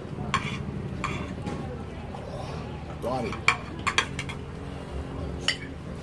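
Metal forks and spoons clinking and scraping on ceramic plates while people eat, with about half a dozen sharp clinks spread through it.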